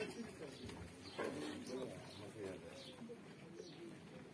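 Faint cooing of pigeons, with faint voices in the background.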